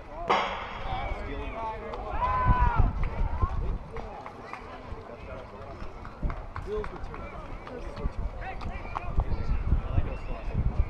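A single sharp crack of a baseball impact with a brief ring about a third of a second in, then raised voices calling out from players and spectators, over a low steady rumble.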